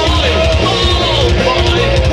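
Heavy metal band playing live at steady, loud volume: electric guitars, bass guitar and drums.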